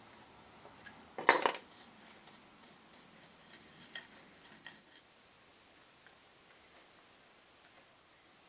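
A small hand tool clattering briefly on the workbench about a second in, then two light taps, while glue is worked into a crack in the mahogany.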